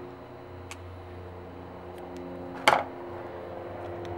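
Scissors trimming foam weather stripping: a light snip under a second in, then a sharper, louder clack a little before three seconds in, over a steady low hum.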